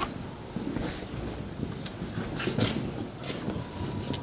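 Low steady room rumble with a few faint short rustles and knocks of people shuffling and moving close by.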